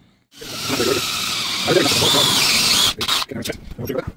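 A power drill boring a hole up through the trailer's plywood floor from underneath: the drill runs steadily for about two and a half seconds with a wavering high squeal in the second half, then stops abruptly, followed by a few knocks.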